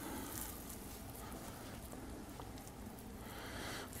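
Faint soft swishing of a damp microfiber towel wiped lightly across painted car bumper, with low room noise underneath.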